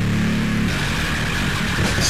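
Power violence band playing in a lo-fi demo recording: heavily distorted guitar and bass hold a low chord, then break into faster, choppier playing under a second in.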